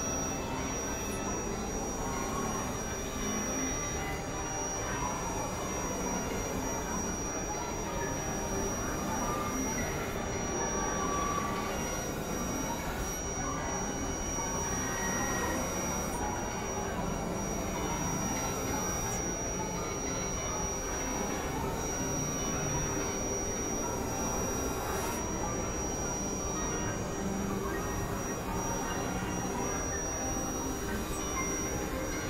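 Experimental synthesizer noise drone: a dense, steady wash of noisy texture with a steady high whistling tone held above it and no beat, at an even level throughout.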